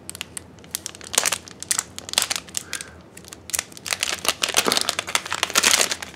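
Plastic packaging crinkling and tearing as a mystery pack's green wrapper is torn open and the foil trading-card booster packs inside are pulled out: a run of irregular crackles that grows busier in the second half.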